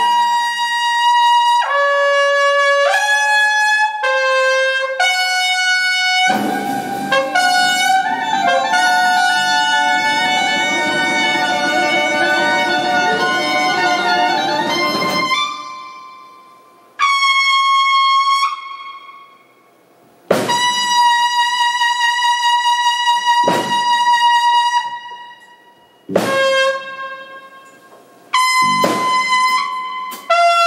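Trumpet playing long held notes in a live band. For several seconds in the middle, other horns and instruments join in a dense passage. After that the trumpet plays single sustained notes again, separated by short pauses in which the sound dies away.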